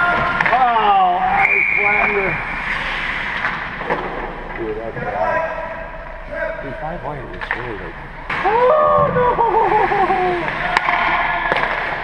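Hockey players yelling drawn-out, wordless shouts and calls over the steady rink noise of skates scraping the ice, with one sharp knock near the end.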